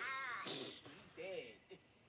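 A man laughing, in a few short high-pitched bouts that rise and fall, dying away near the end.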